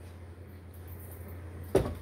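A tilt-head stand mixer, switched off, has its head raised: a single clunk near the end as it lifts and locks, over a low steady hum.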